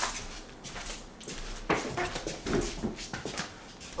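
Heavy sofa being lifted and shifted: scattered knocks and bumps, with a few brief high-pitched vocal sounds about two seconds in.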